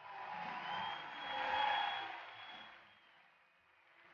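Studio audience cheering and clapping, swelling to a peak in the middle and then fading out.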